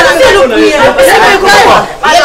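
Several people talking loudly over one another in a heated quarrel.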